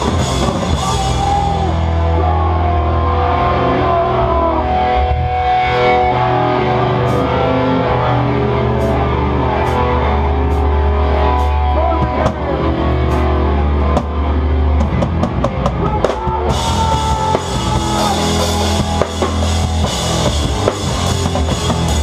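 Live hardcore band playing loud in a small room, with the drum kit close and prominent: guitar and bass hold heavy low notes while the cymbals drop out after a second or two. A few sparse cymbal hits come in, then a quick run of hits brings the full kit crashing back in about sixteen seconds in.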